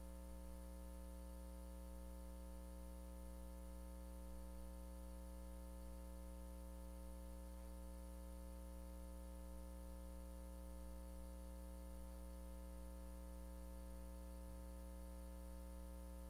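Faint steady electrical hum and buzz over a light hiss: a set of unchanging tones with nothing else happening, typical of mains hum on an idle audio feed.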